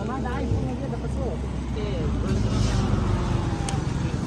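Low, steady rumble of road traffic under scattered men's voices talking, the rumble swelling in the middle.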